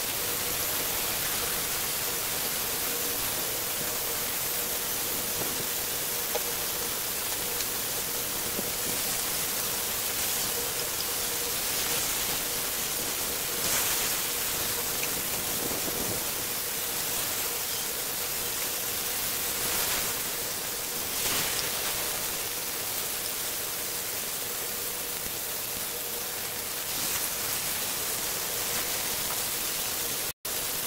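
Beef slices and garlic sizzling steadily in a hot oiled grill pan, with a faint steady tone underneath. A few brief scrapes and clicks of utensils handling the meat come in the middle.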